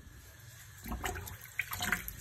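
Water splashing in a bowl in a stainless-steel sink as rose petals are rinsed by hand, in irregular splashes beginning about a second in.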